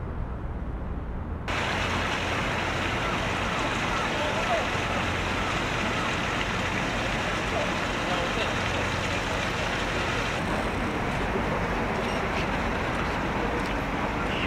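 Steady outdoor background noise with faint, indistinct voices in it. The sound changes abruptly about a second and a half in, from a low rumble to a brighter, fuller hiss.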